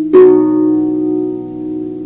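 A harp chord plucked once, just after the start, then left to ring and slowly fade.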